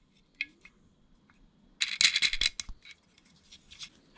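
Small metal parts clinking: a cable lug and nut being fitted onto the threaded terminal stud of a Blue Sea battery main switch. A couple of faint clicks come first, then a quick cluster of clinks and rattles near the middle.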